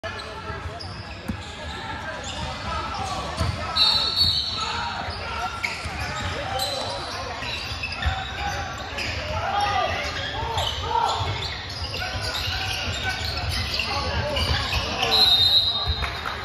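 A basketball bouncing on a hardwood gym floor amid spectators' chatter in a large gym. Two short shrill blasts of a referee's whistle sound, about four seconds in and again near the end.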